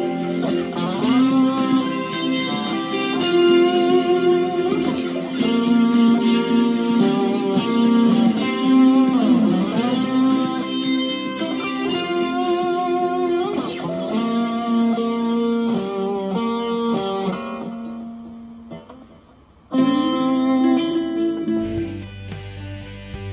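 Fender Stratocaster electric guitar playing a lead melody of held notes with string bends, over a steady ticking beat. The music fades down near the end, and a new passage starts abruptly just before the close.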